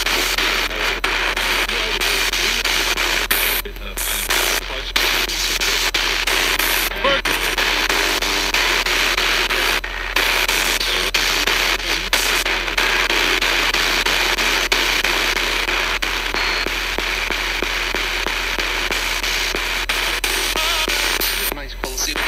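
Spirit box sweeping through AM radio stations: a steady hiss of static with brief snatches of broadcast voices, cut by a few short, abrupt dropouts.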